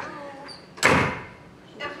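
A glass-paned double door on a stage set pulled shut with a single loud bang about a second in, which rings out briefly.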